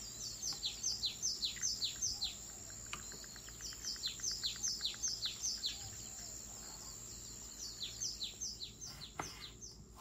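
A small bird singing: three runs of quick, high chirps, each falling in pitch, about four a second.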